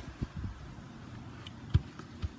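A football being bounced and tapped on a grass lawn: a few short dull thumps, the loudest and sharpest one near the end.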